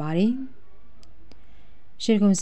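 A narrator's voice finishes a phrase, then a pause with a low hum and two faint, brief clicks about a second in.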